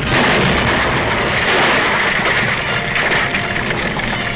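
Sound effect of a skyscraper breaking apart and collapsing: a loud, continuous crashing and rumbling noise with no music over it.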